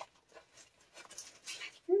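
A puppy chewing on a plastic wrapper: faint, intermittent crinkling and rustling.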